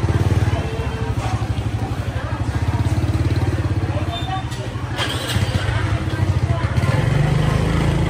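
Small motorcycle engine running close by with a steady, rapid pulse, its pitch rising near the end as it is revved, over the chatter of voices.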